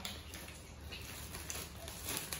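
Faint handling of a clear plastic bag as it is gathered and tied closed, with a few light crinkles and clicks, over a steady low hum.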